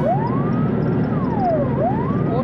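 Police siren wailing, its pitch rising and falling in a slow sweep about once every two seconds, over a low rumble of traffic.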